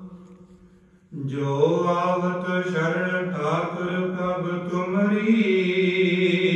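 Sikh kirtan singing of gurbani. A held sung note fades almost to silence, then about a second in a new phrase comes in suddenly, its pitch gliding, and carries on.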